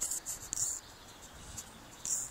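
Handling noise on an HTC Desire HD phone: fingers rubbing and tapping the casing and touchscreen close to its own microphone while hunting for the zoom, in a few short scratchy bursts in the first second.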